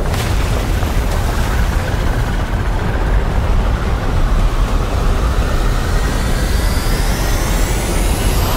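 Trailer sound design: a loud, dense low rumble with a whine rising steadily in pitch over it, building from a couple of seconds in.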